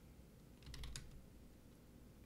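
A short run of quiet computer keyboard keystrokes, a handful of clicks in quick succession about half a second in, as a ticker symbol is typed into the trading software.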